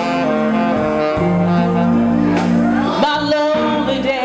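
Live blues band playing, a saxophone carrying the tune in long held notes over the band. Near the end a woman's singing voice comes in.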